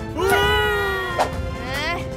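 A cartoon character's drawn-out, whiny vocal sound that rises and then holds for about a second, over background music. It is followed by a click and a quick rising swoop near the end.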